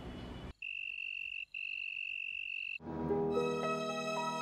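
Night insect sound effect: a high, steady cricket-like trill in two long stretches with a brief break between them. Soft keyboard background music comes in about three seconds in.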